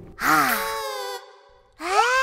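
A cartoon character's voice letting out a long satisfied 'ahh' after a drink of juice; it falls in pitch, holds, and fades out about a second and a half in. A rising vocal sound starts near the end.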